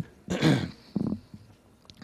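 A man's two short coughs close to a microphone, about half a second apart.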